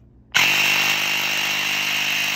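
Airmoto portable cordless tire inflator's electric air compressor switching on suddenly about a third of a second in and running steadily with a high-pitched whine.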